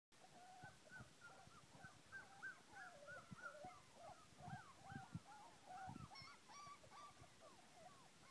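Several puppies whining and whimpering at once, faint, a constant overlap of short high cries that bend up and down in pitch, with a few soft low thumps.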